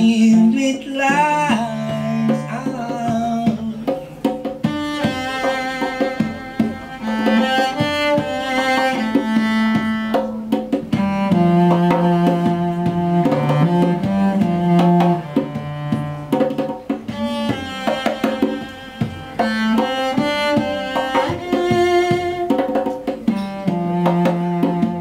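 Cello playing long bowed notes that change pitch every second or two, over the steady hand-struck beat of a Nyabinghi drum, with no singing.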